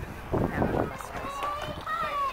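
A short low rumbling burst, then a person's long, drawn-out shout from about halfway in, held on one pitch and sliding down at the very end.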